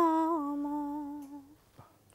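A woman's unaccompanied voice humming the last held note of a Bengali song with closed lips. The note steps down slightly and fades out about a second and a half in.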